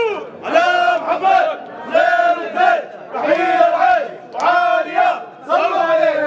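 Men chanting loudly at a traditional Arab wedding, in short shouted phrases about once a second, each a held note.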